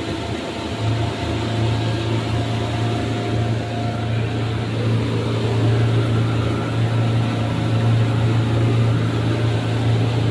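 Mercury outboard motor pushing a rigid inflatable boat at speed: a steady low engine drone over the rush of wake and spray, growing louder about a second in.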